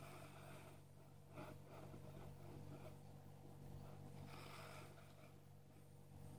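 Near silence: a faint steady room hum, with faint soft handling noises about a second and a half in and again near the end.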